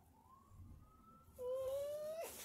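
A dog whining: a faint, slowly rising whine, then about one and a half seconds in a louder, steady whine that creeps up slightly in pitch.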